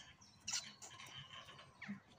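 Faint bird chirps outdoors, with a short soft rustle about half a second in.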